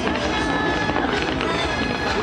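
Music playing amid the crackle of a fireworks display fired from a skyscraper, with voices mixed in.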